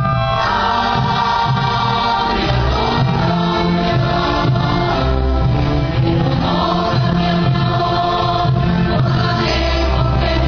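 Orchestra with a string section playing, together with a choir singing, in one steady, full passage of held chords.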